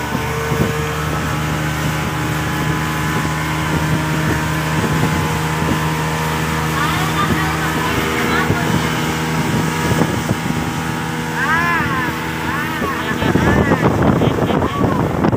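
Passenger speedboat's engine running steadily at speed, a constant drone under the rush of wind and water spray.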